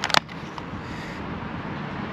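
A short, sharp double click as a coin in a clear plastic capsule is handled in its velvet presentation box, then a steady low background hum.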